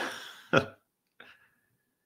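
A man chuckling: two short bursts of laughter about half a second apart, then a fainter one about a second in.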